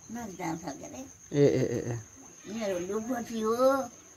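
An elderly woman crying as she speaks, her voice breaking into wavering, sobbing wails in three bursts, the longest near the end. A steady high-pitched cricket trill sounds underneath.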